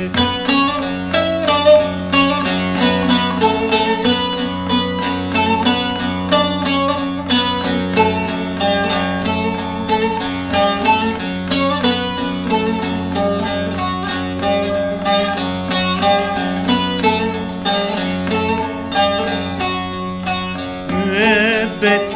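Instrumental break of a Turkish arabesk song: a plucked string instrument plays a quick, busy melody over a steady low held note, with no singing.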